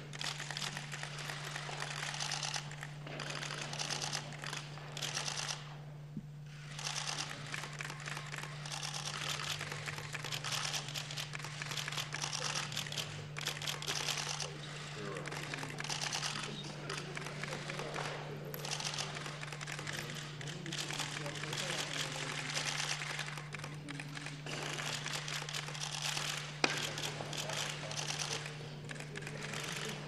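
Many press cameras' shutters firing in rapid, overlapping bursts of clicks, with a brief lull about six seconds in, over a steady low hum.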